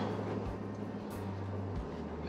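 Pickup truck's engine idling, heard from inside the cab as a steady low hum.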